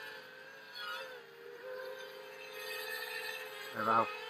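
Quadcopter's Racerstar BR2205 2600KV brushless motors and props running under a heavy load, a steady whine that wavers and dips briefly about a second and a half in before coming back up.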